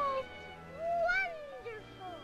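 A cartoon mole's wordless voice: one call about a second in that rises and then falls in pitch, and a shorter falling one after it, over soft orchestral score. A held note from the music ends just after the start.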